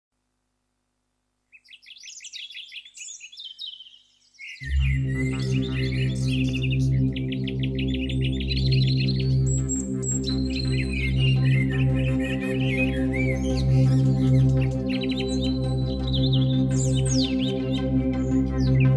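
Birds chirping and singing, joined about four and a half seconds in by a sustained, slowly shifting ambient synthesizer pad from a Korg Wavestate. The pad becomes the loudest sound, and the birdsong goes on over it.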